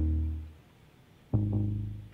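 Beat playing back from music-production software: a plucked synth chord over a deep bass note. It fades out within about half a second, and after a short pause the chord is struck again about a second and a half in.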